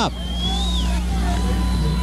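A steady low hum, with faint thin high tones above it: one drifts up and then falls in the first second, and another holds steady near the end.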